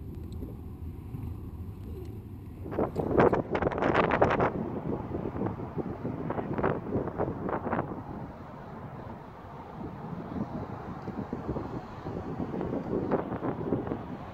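Wind buffeting the microphone in uneven gusts over a steady rumble. The gusts are loudest about three to four seconds in and come again near the end.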